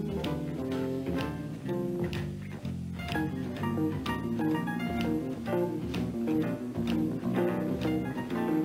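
Live jazz band playing: an electric guitar runs quick plucked single notes over a walking bass line and drums.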